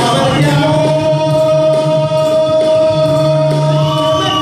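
Live performance of a Bengali song by a band with singers: a sung note held for about three seconds over guitars and keyboard, with the next phrase beginning near the end.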